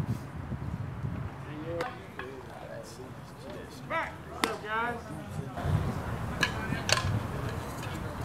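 Baseball game sounds: short shouted calls from the field and stands, and a few sharp pops, one about four and a half seconds in and two more close together near the end.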